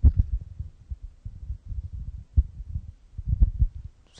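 Handling noise from a handheld microphone as it is passed from one person to another: irregular low thumps and rubbing, with sharper knocks right at the start and about three and a half seconds in.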